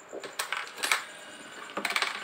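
Coins clinking in the clear plastic bowl of a homemade automatic coin counter for Thai baht coins, about five separate short clinks spread over two seconds.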